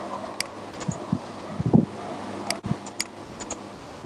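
Computer mouse clicking about half a dozen times, sharp short clicks spread through, over a steady background hiss. A few dull low thumps come in between, the loudest a little before halfway.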